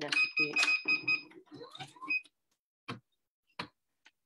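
Necchi HP04 electronic sewing machine stitching an appliqué stitch in short runs: a motor whine with a rapid stitch rattle for just over a second, a shorter run about two seconds in, then two sharp clicks near the end.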